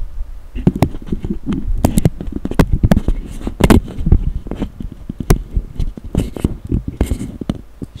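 Handling noise from the camera being picked up and repositioned: an irregular jumble of knocks, clicks and rubbing close to the microphone, with low rumble.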